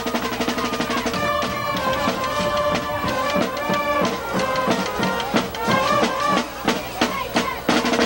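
Band music with a busy drum beat, snare and bass drum striking rapidly under held notes.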